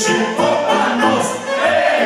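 A group of men singing together in chorus over live band music.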